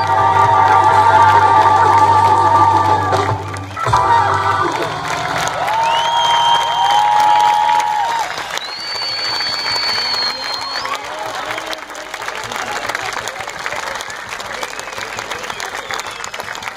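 A live jazz band with trumpet, double bass, drums and keyboards holds a final chord with a wavering top note, cutting off about four seconds in. The audience then breaks into applause and cheering, with several long whistles.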